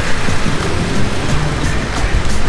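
Steady city-street traffic noise with background music under it.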